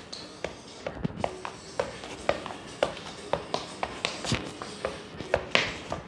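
A football being juggled on the feet, each touch a sharp tap, about two a second, sometimes quicker, with faint background music.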